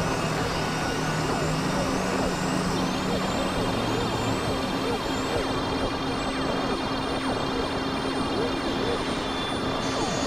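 Synthesizer noise piece: a dense, steady wash of noise over held low drone tones, with many short pitch swoops and a small arching chirp repeating high up about every two thirds of a second.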